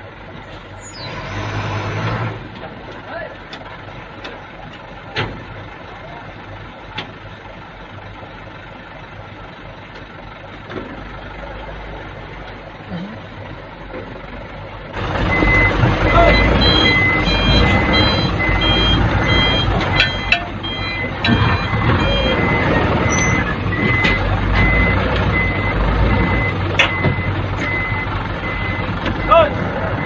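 Low rumble of a heavy truck at idle. About halfway in it gives way to a dump truck's engine running louder, its back-up alarm beeping steadily about twice a second, with men's voices near the end.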